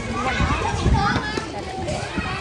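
Several people talking over one another in lively, indistinct chatter, some voices high like children's, with a few low bumps about half a second to a second in.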